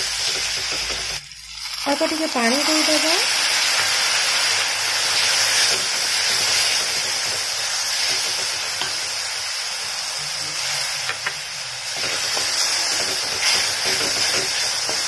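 Green paste of coriander leaves, green chilli, garlic and ginger sizzling in hot oil with fried onions in a steel kadhai while a wooden spatula stirs it: a steady frying hiss that dips briefly about a second in.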